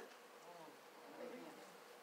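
Near silence: room tone, with faint, brief traces of a distant voice.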